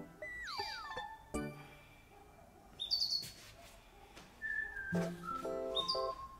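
Light, playful background music with plucked guitar-like notes and chords. A falling whistle-like glide comes near the start, and short high chirping sounds come later. The music thins out a couple of seconds in, then the plucked chords return about five seconds in.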